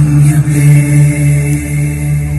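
Music track of Sanskrit chanting: a deep voice holds one long chanted note over a steady drone.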